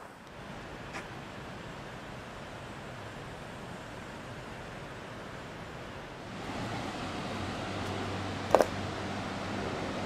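Steady rushing noise that steps up louder and fuller about six seconds in: river water spilling over a dam.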